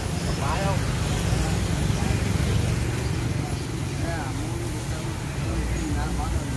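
Open-air background sound: a steady low rumble with brief snatches of people talking in the background.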